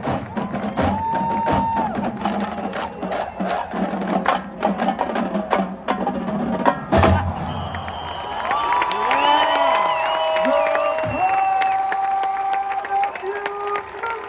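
Marching band percussion playing a run of sharp stick clicks and drum strikes, closing with a loud hit about seven seconds in. After that the stands break into cheering, with whoops and whistles.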